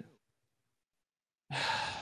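Silence, then about a second and a half in a man's breathy sigh into a close podcast microphone, just before he speaks.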